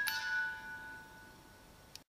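Closing chime: the last note of a short bell-like tune, struck once and ringing out, fading over about a second and a half before the sound cuts off.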